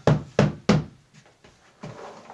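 Hand tapping the top of an upturned Omega Paw plastic litter box, three sharp knocks in the first second, shaking the litter down through its grate.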